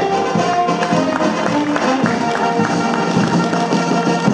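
Instrumental band music with brass, playing steady held notes.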